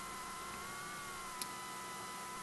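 Steady room tone: a faint hiss with a thin, slightly wavering electrical whine, and a single faint click about one and a half seconds in.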